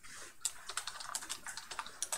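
Computer keyboard being typed on: a quick run of keystroke clicks, about a dozen in a second and a half, as a word is typed out.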